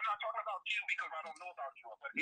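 Fainter speech through online call audio, with the thin, phone-like quality of a voice chat, too soft for its words to be made out.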